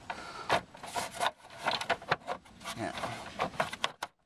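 Plastic tow eye cover being pressed and worked into a Range Rover Sport's front bumper: a string of sharp plastic clicks and knocks with rubbing and scraping as the cover resists going into place.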